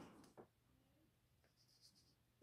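Near silence, with the faint scratch of a pen on paper making a mark.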